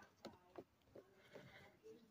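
Near silence of still outdoor air, with a few faint, brief soft sounds.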